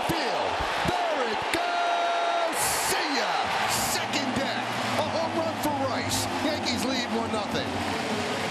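Large ballpark crowd cheering and shouting continuously after a home run, with a held steady tone about two seconds in.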